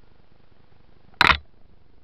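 A single short, sharp knock a little over a second in, over a faint steady hiss: a jolt picked up by the helmet camera as the bicycle rides over the rough woodland dirt track.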